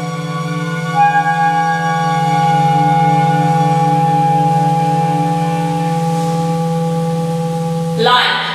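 Contemporary chamber music from clarinet and bowed strings holding long, steady notes: a low note sounds throughout, and a higher note enters about a second in and is sustained.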